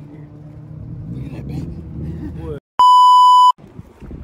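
A loud, steady bleep tone just under a second long, about three seconds in, with the sound cut to silence just before and after it: a bleep edited in over the talk. Before it, voices over a low street background.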